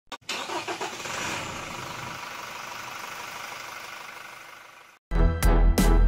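A car engine starts and runs, then fades away over about five seconds. Just before the end, louder music with a heavy bass beat comes in.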